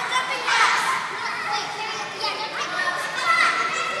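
Several children's voices calling and chattering as they play in a large gym hall.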